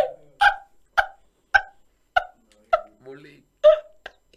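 A man laughing hard in short breathy bursts, about two a second.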